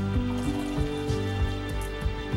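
Background instrumental music, with faint splashing of water and peas being poured into a metal colander under it.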